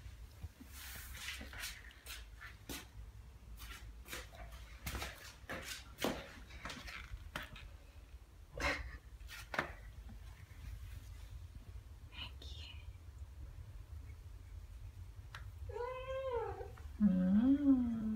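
Ragdoll cats meowing: an arching meow about two seconds before the end, followed at once by a lower, wavering one, the loudest sounds here. Before them, scattered short faint clicks.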